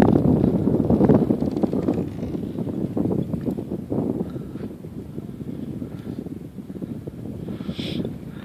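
Wind buffeting the microphone: a low, unpitched rumble that gradually dies down.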